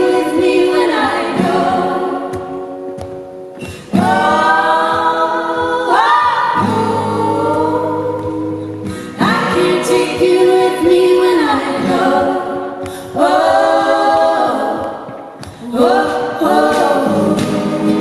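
Several women's voices singing close harmony in long held phrases, over acoustic guitar, in a live performance.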